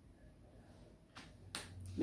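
Two short sharp clicks about half a second apart, the second louder, from a whiteboard marker being handled after dots are drawn on the board.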